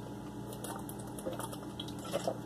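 Someone drinking from a plastic bottle: a faint run of small irregular clicks and crackles from gulping and from the plastic.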